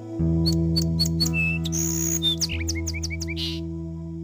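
A held closing chord of the music begins just after the start and fades slowly. Over it a bird chirps a quick series of short, high, falling calls for about three seconds, stopping shortly before the end.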